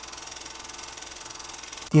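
Steady, fast mechanical rattle with an even rapid pulse, which cuts off just before the end as a voice begins.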